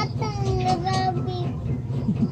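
A child's voice singing one drawn-out note that sags slightly in pitch and stops about three quarters of the way through, over a steady low hum.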